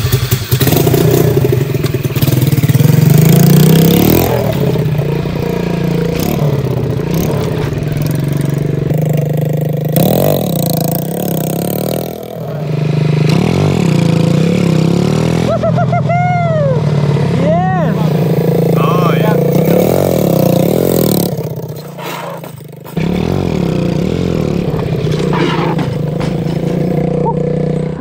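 The 125cc four-stroke single-cylinder engine of a small drift kart with a manual four-speed gearbox, running and revving as it is driven, its pitch rising and falling with throttle and gear changes. The engine dips briefly a little before the end.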